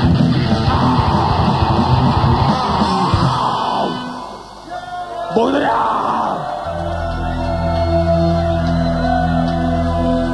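Live heavy metal band playing loud with a shouted vocal, breaking off about four seconds in. After a brief dip and one more vocal cry, a steady low held chord comes in about seven seconds in and sustains.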